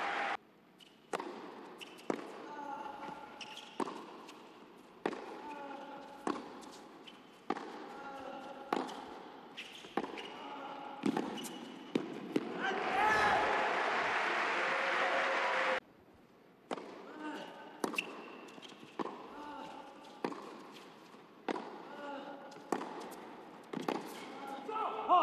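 Tennis ball struck back and forth with rackets in rallies on an indoor hard court, a sharp hit about once a second. About halfway through, a few seconds of applause that cuts off abruptly before the hits resume.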